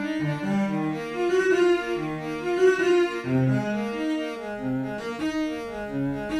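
Sampled cello from the free Project Alpine library, played in Kontakt, bowing a legato melodic line of sustained notes that change about every half second. The epicVerb reverb on the cello is on at the start and bypassed by the end.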